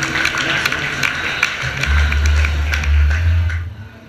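A rockabilly trio of acoustic rhythm guitar, electric lead guitar and double bass playing the final bars of a song, with a steady clicking beat and heavy low bass notes, then stopping about three and a half seconds in.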